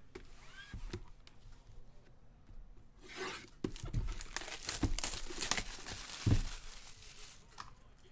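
Plastic shrink-wrap being torn and crumpled off a sealed trading-card box, a dense rustling that starts about three seconds in and lasts about four seconds. Two dull thumps come as the box is handled.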